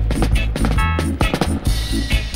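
Roots reggae dub instrumental playing from a 7-inch vinyl single: a heavy bass line and drums with short repeated chord stabs, and a cymbal wash near the end.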